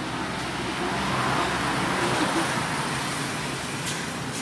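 Road traffic noise from a busy street, with a passing vehicle whose tyre and engine noise swells about a second in and then fades.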